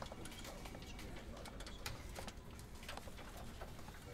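Faint, scattered light clicks and taps over low room tone.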